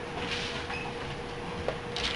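Classroom background noise: a steady low hum with faint rustling and shuffling as students move about, and one sharp click near the end.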